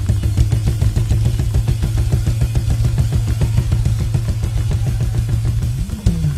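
Live band playing an upbeat praise groove: a drum kit drives a fast, dense beat with bass drum, snare and cymbals over a steady, held bass line.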